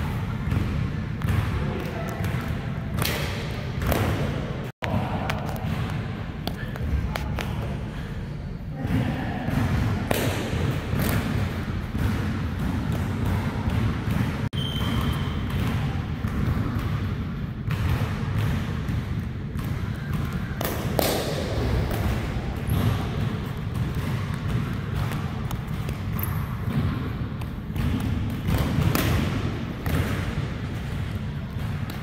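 A basketball bouncing and the thuds of jumps landing on a hardwood gym floor, scattered over a steady rumble of room noise in a large hall.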